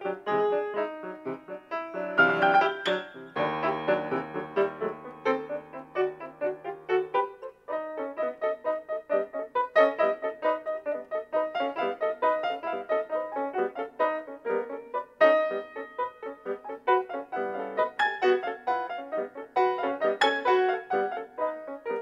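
Grand piano played solo in quick, busy runs of notes, with a low chord held and left ringing about three to seven seconds in.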